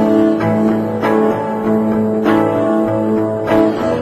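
Instrumental music: acoustic guitar chords strummed about once a second over held low, string-like notes.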